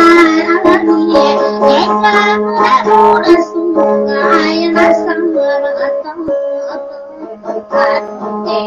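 A dayunday song: singing with instrumental accompaniment over a steady low drone, easing off a little near the end before picking up again.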